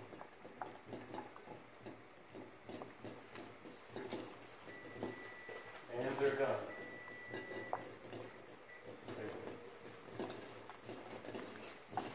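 Saucepan of water at a gentle rolling boil with two eggs in it, bubbling softly, under faint voices in the background. A faint high steady tone sounds about midway, breaking off once.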